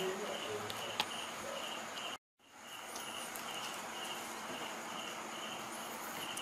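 An insect chirping steadily in short pulses, about two a second. The sound cuts out completely for a moment about two seconds in, then the chirping carries on.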